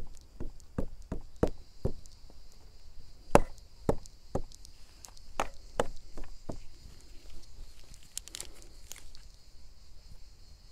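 A series of irregular sharp taps and knocks, one or two a second, over a steady high-pitched insect drone.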